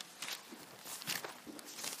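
Faint rustling of thin Bible pages being turned, a few short soft strokes.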